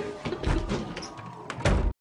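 A door bumping and thudding twice, a smaller thud about half a second in and a louder one near the end. The sound cuts off abruptly.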